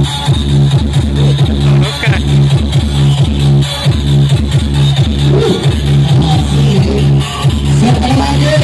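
DJ electronic dance remix played loud through a small party sound system, with a heavy bass note repeating on a steady fast beat, a little over twice a second.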